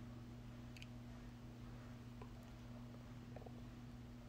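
Near silence: room tone with a low steady hum and a few faint, scattered ticks.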